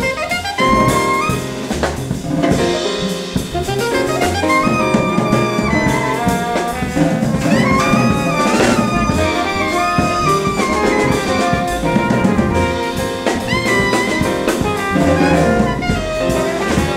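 Live acoustic jazz quintet: trumpet and alto saxophone playing melodic lines together over piano, double bass and a drum kit with ride cymbal.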